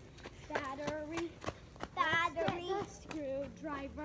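Young children's voices talking and calling out in play, with a few sharp clicks between them.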